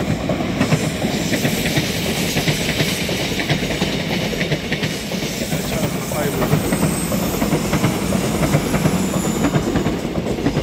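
A commuter electric train running past on the tracks below, with a steady rumble and rapid clicking of its wheels over the rail joints, the clicks thickest in the first few seconds.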